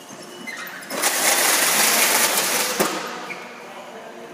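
Case sealer taping a cardboard carton: a loud rasp of packing tape unwinding onto the box for about two seconds, ending in a sharp snap as the blade cuts the tape.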